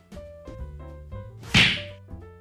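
Background guitar music with a single sharp whoosh sound effect about one and a half seconds in, the swoosh that brings in a subscribe-button animation.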